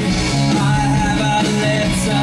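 Live rock band playing a song: electric guitars and drums under a male lead vocal.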